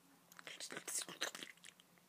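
Faint whispering: a quick, irregular run of soft hisses and clicks with no voiced tone.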